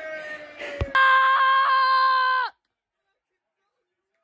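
A boy's long drawn-out wail of dismay, then a louder, steady held scream that cuts off suddenly about two and a half seconds in, at a goal conceded by his team.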